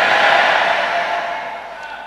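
Congregation calling out together in response, a mass of voices that is loudest at first and dies away over about two seconds.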